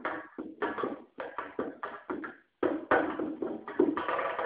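Drum kit struck in short, irregular strokes with brief gaps between them, growing denser in the last second. The recording comes from a camera phone, so the sound is thin and the highs are cut off.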